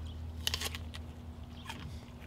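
A bite into a hard, crisp Gold Rush apple: one sharp crunch about half a second in, followed by a few fainter crunches of chewing.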